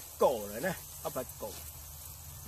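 A man speaking a few short phrases in two brief spells, over a steady faint hiss in the background.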